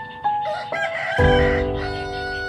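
Slow background piano music with sustained notes. A rooster crows once through it, from about half a second in to about one and a half seconds.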